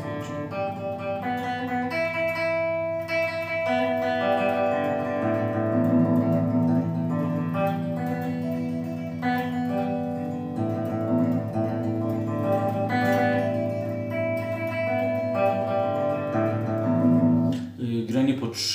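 Electric guitar's open strings picked in a continuous alternate down-up picking exercise in groups of three, the notes moving from string to string every second or so.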